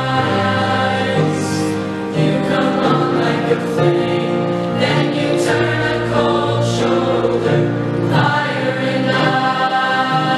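Mixed choir of teenage boys and girls singing a song in harmony, holding long chords that change every second or so.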